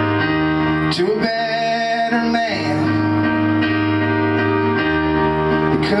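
Live solo keyboard playing sustained chords, with a man singing: one held, bending sung line about a second in and the start of the next line at the very end.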